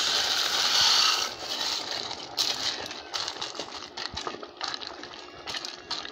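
Dry fusilli pasta tipped into a metal pot of simmering tomato sauce. A rush of pasta sliding in comes first, then scattered light clicks and rattles of pieces dropping and of the wooden spoon against the pot.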